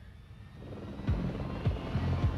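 Helicopter drone on a TV promo's soundtrack, with music fading in under it. A slow beat of deep thumps starts about a second in.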